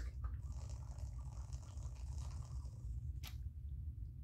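Sipping water through a Cirkul bottle's mouthpiece and flavor cartridge: a faint airy sucking hiss for about three seconds, then a short click.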